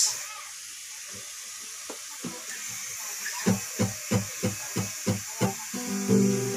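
Acoustic guitar picked note by note as the intro to a self-written song: a few scattered notes at first, settling into a steady run of plucked notes about three a second from about halfway through, over a faint steady hiss.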